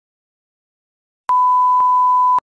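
Silence, then about a second in a steady single-pitch 1 kHz beep starts and holds: the reference tone that goes with a TV colour-bar test pattern. A faint click breaks it about half a second after it begins.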